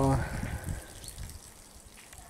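Faint dripping and trickling from a spring that is barely flowing, its water seeping down a mossy stone face.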